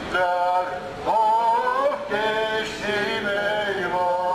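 A group of marchers singing together in unison, a song in phrases of long, held notes.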